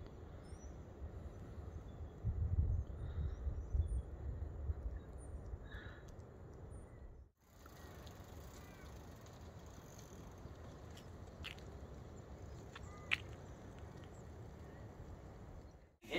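Outdoor ambience with scattered bird calls, and a low rumble for a few seconds in the first half.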